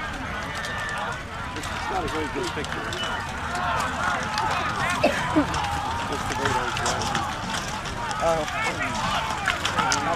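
Many voices shouting and yelling at once over scattered sharp clacks of rattan weapons striking shields and armour in a mass melee, with a couple of louder cracks about halfway through.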